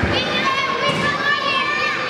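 Children's high voices calling and chattering at a busy indoor playground, over the steady hubbub of a large hall.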